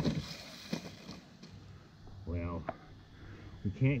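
Brief snatches of a man's voice, a short mumble about halfway through and the start of speech at the very end, over quiet outdoor background with a few faint clicks.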